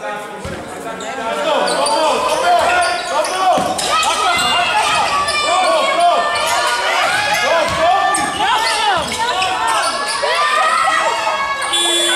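Basketball being dribbled and many sneakers squeaking on the wooden court, with players shouting. Near the very end a steady buzzer tone starts: the game horn marking the clock running out.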